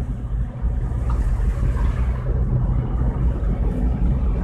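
Seat Mii's 1.0-litre three-cylinder petrol engine pulling under load in third gear, with tyre and suspension noise from a rough, potholed track, heard inside the cabin as a steady low rumble.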